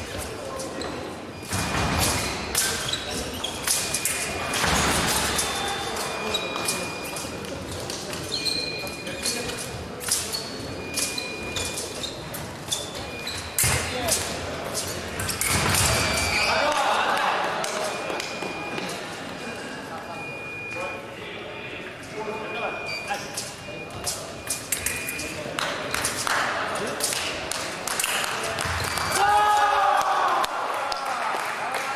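Fencing bout in a large echoing hall: rapid clicks of blades striking and thumps of footwork on the piste, with short electronic beeps recurring throughout. Voices are heard in the middle and near the end.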